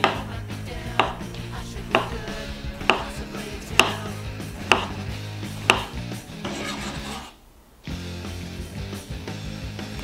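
Chef's knife slicing a tomato into thin rounds on a wooden cutting board, each cut ending in a knock of the blade on the board, about one a second.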